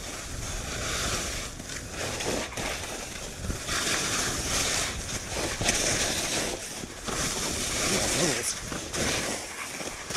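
Skis scraping and hissing over packed snow in repeated surges as the skier turns, with wind rumbling on the camera's microphone.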